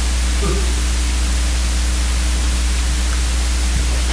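Steady hiss with a low, constant electrical hum from a microphone and PA sound system, and a brief faint voice about half a second in.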